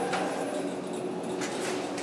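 Schindler hydraulic elevator's pump motor running as the cab goes up, heard from inside the cab as a steady hum with several held tones.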